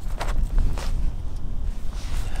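Gusty wind buffeting the microphone, a fluctuating low rumble, with a couple of light clicks in the first second as hands handle the drone.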